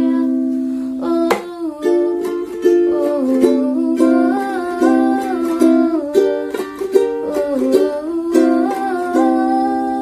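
Ukulele strummed through a Dm–C–Gm–C chord progression, with a woman singing a wordless 'ooh' melody over it.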